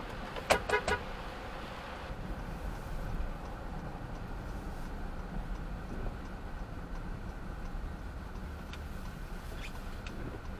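Steady road and engine noise of a car driving. About half a second in, a vehicle horn toots a few quick times.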